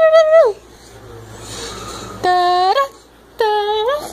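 A baby's high-pitched vocal calls, three short held notes: one at the start that falls away about half a second in, one a little after two seconds, and one near the end.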